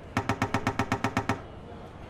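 Logo-animation sound effect: a rapid run of about a dozen short pitched knocks, roughly ten a second, lasting just over a second and then stopping, over a low hum.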